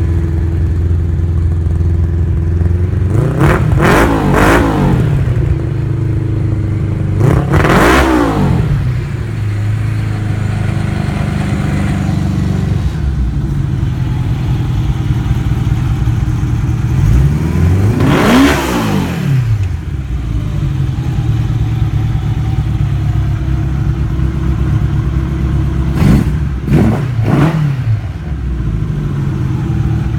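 1984 Honda GL1200 Gold Wing's liquid-cooled flat-four engine idling through an aftermarket exhaust and revved in short throttle blips, about six in all: two early, one about eight seconds in, a longer rev around the middle and two quick ones near the end. The engine runs well, in the seller's words.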